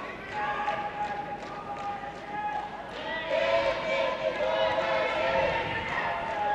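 Long, drawn-out shouted calls from coaches and spectators urging on judoka during a standing grip fight, with light thumps of bare feet on the tatami.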